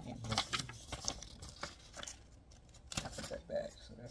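Paper play-money bills rustling and crinkling in short bursts as they are picked up and handled.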